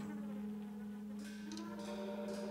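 Tenor saxophone holding one long, steady low note in a slow jazz quintet piece, with upright bass and electric guitar playing quietly underneath.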